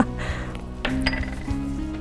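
A metal spoon clinking a few times against a small ceramic bowl while scooping, over background music.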